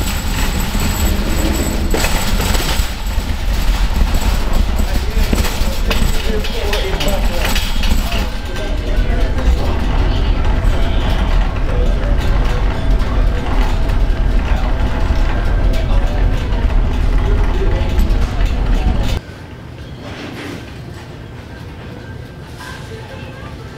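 Loud rumbling and rattling of a shopping cart being pushed across a supermarket's hard floor, with indistinct voices mixed in. About nineteen seconds in it cuts off suddenly to much quieter store room tone.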